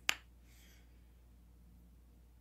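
A single short, sharp click just after the start, followed by quiet room tone.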